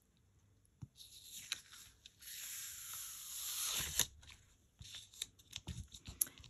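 Cardstock being peeled off a Sizzix sticky sheet in a MISTI stamping platform: a steady rustling peel lasting about two seconds, with a few light clicks and taps of paper and the platform around it.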